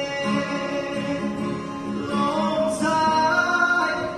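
A man singing into a microphone over guitar accompaniment, with long held notes that bend between pitches.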